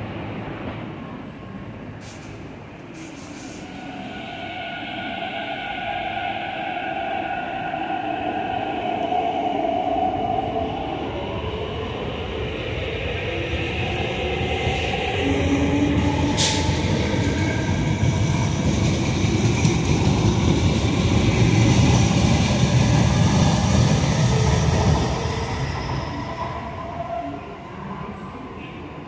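MTR East Rail line MLR electric train pulling out of the station and accelerating away. Its motors whine, rising in pitch, and the wheels rumble on the rails, loudest a little past the middle as the cars go by, then fading. One sharp click about two-thirds of the way through.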